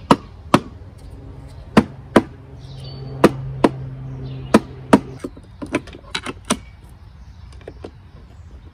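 A mallet striking the case of a Peugeot BA10 five-speed manual transmission to knock its front section loose: about eight sharp blows in rough pairs over the first five seconds, then a few lighter taps. The section does not come free and is still held by something inside.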